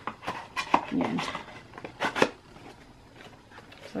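Cardboard skincare product box being picked up and handled: several short taps and rustles over the first two seconds.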